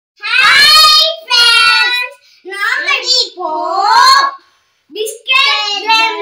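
Two children loudly chanting sung phrases together, several lines with short breaks between them, some notes held for about a second.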